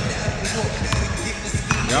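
A basketball being dribbled on a hardwood gym floor, a few separate bounces.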